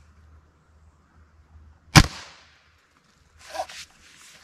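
A single shot from a Hatsan Mod 130 QE .30-calibre break-barrel air rifle fitted with a suppressor, about two seconds in: one sharp crack with a short fading tail. Near the end, a brief rustle as the rifle is handled.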